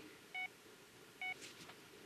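Two short electronic beeps about a second apart from a bedside patient monitor, faint over quiet room tone.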